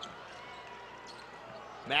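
Quiet basketball arena game sound: a low crowd murmur in a large hall, with a basketball bouncing on the hardwood court.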